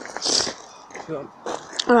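Mostly quiet, with a brief hiss near the start and faint voices, then a boy says "Alright" near the end.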